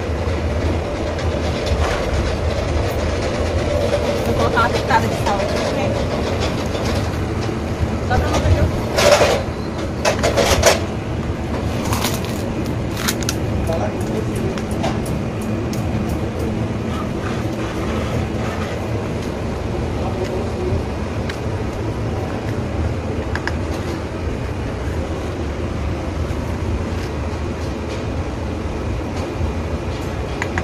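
Steady low engine rumble of trucks in a lorry yard, with a few louder clatters and knocks between about nine and thirteen seconds in.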